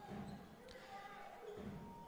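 Faint handball arena sound: a ball bouncing on the court, with faint voices in the hall.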